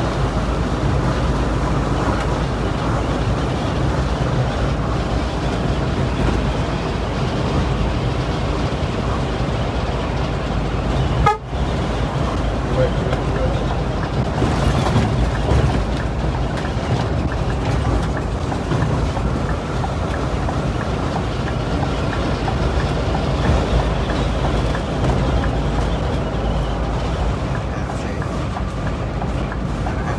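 Steady drone of a Scania K360iB coach's rear-mounted diesel engine with tyre and road noise, heard from the driver's cab while cruising on a motorway. The sound breaks off briefly about eleven seconds in.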